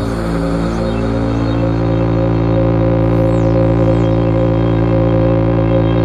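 Electronic music: a sustained droning chord over a low bass note, with a higher tone wavering up and down and faint falling sweeps about halfway through.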